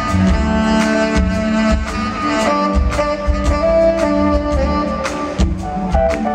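Live band playing a funk groove, with a tenor saxophone lead playing held, bending notes over drums and bass.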